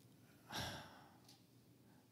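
A man's sigh: one short breathy exhale into a handheld microphone about half a second in.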